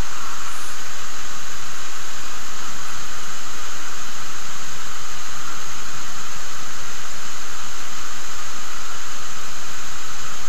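A loud, steady hiss that does not change, with no other sound standing out.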